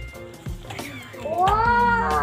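A young child's long, drawn-out high-pitched vocal exclamation, like a 'wooow', starting about a second in and rising then falling in pitch, over steady background music.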